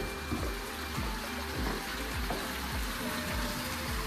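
Backyard stone waterfall fountain splashing steadily, under soft background music.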